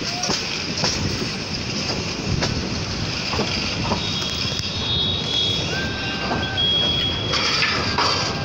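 Kurigram Express passenger train running at speed, heard from an open coach door: a steady rumble and rush of wheels on rails with scattered clicks. Brief high steady squeals sound in the second half.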